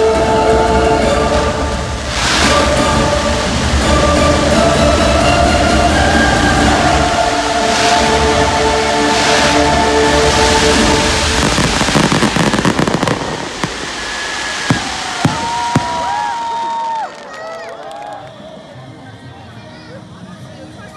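A fireworks display, dense crackling and popping over loud show music, then three sharp bangs about half a second apart. The level drops suddenly near the end, leaving people's voices.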